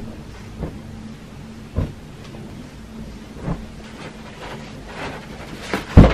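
Clothes being handled and set down on a bed: scattered soft thumps and rustles at irregular intervals over a low steady room hum, with a sharper thump at the end.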